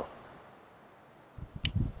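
Near silence in a pause between a man's spoken cues: his word trails off just after the start, then about a second of quiet, then a faint low rumble and one small click near the end.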